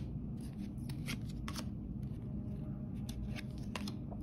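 Paper trading cards being flipped through by hand, each card sliding off the front of the stack with a short, sharp swish, about seven times at uneven intervals, over a low steady background hum.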